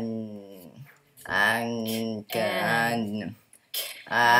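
A boy's voice sounding out a word slowly, stretching each sound into a long, steady hum or vowel of about a second. Three such drawn-out sounds follow one another with short pauses between.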